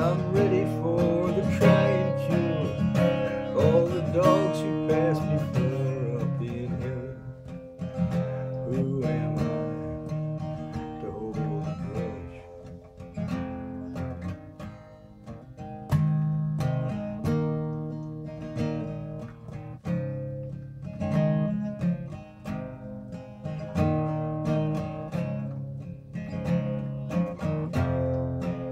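Acoustic guitar strummed in a slow folk song, chords moving through E minor, G, D and C.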